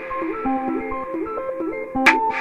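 Dark techno intro: a Korg synthesizer plays a sequenced pattern of short, repeating notes, with a sparser higher melody line above and only faint ticks beneath, without a kick drum.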